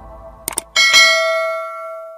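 Subscribe-button animation sound effects: the fading tail of soft intro music, two quick mouse clicks, then a bright notification-bell chime that rings out and slowly fades.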